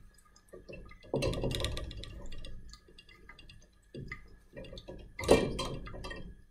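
Laboratory glassware and a metal stand clamp being handled as a distillation apparatus is taken apart: light clinks and knocks, a longer rubbing noise about a second in, and a louder knock near the end.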